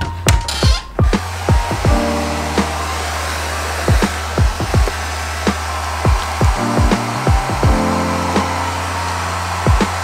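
Handheld hair dryer blowing steadily, starting about a second in and switching off near the end, under background music with a steady beat.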